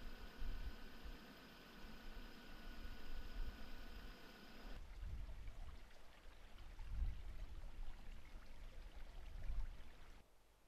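Wind gusting on the microphone, with a faint steady high tone over the first half. After a cut about five seconds in, a shallow creek runs over rocks, still with gusts of wind on the microphone.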